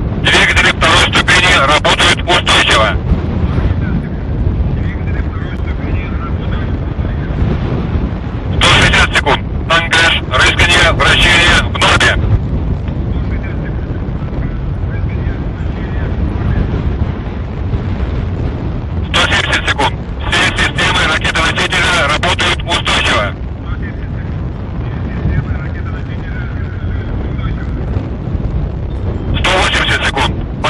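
Short spoken flight-progress callouts in Russian over the launch control loop, heard three times and starting again near the end, over a steady low rumbling noise.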